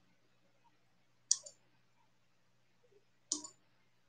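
Computer mouse clicking: two sharp clicks about two seconds apart, each followed at once by a fainter second click.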